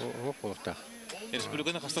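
A man's voice commentating, in drawn-out, broken phrases.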